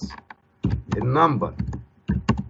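Computer keyboard keys clicking as text is typed, with a voice talking over the middle of it.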